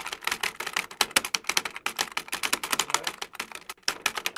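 Typewriter keys clacking rapidly and unevenly, about ten strikes a second: a typing sound effect.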